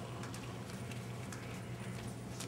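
Quiet room tone: a steady low hum under faint hiss, with a few faint, irregular clicks.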